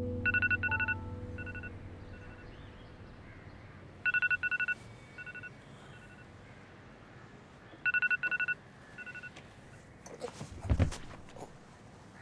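A mobile phone's electronic beeping tone: a quick run of beeps at two high pitches, then a few softer beeps, repeating about every four seconds, three times. Near the end, a thud and rustling as a person tumbles off a sofa onto the floor.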